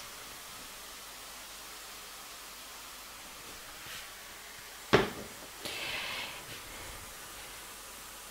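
Faint steady hiss of onions frying in hot rendered bacon fat in a pan. About five seconds in, the frying pan is set down with one sharp knock on a glass-ceramic hob, followed by a brief rustling noise.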